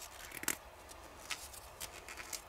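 Faint rustle of a paper towel strip being twisted between the fingertips into a wick, with a few soft crackling ticks.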